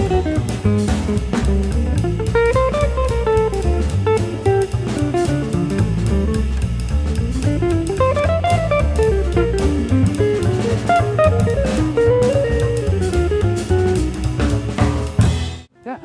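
Jazz trio playing: a hollow-body archtop electric guitar plays a flowing single-note melody over walking upright bass and drum kit with ride cymbal. The music cuts off abruptly near the end.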